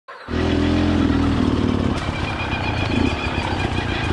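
Two-stroke Beta enduro dirt bike engine running at low revs on a trail, a steady note for about the first two seconds that then turns uneven and pulsing.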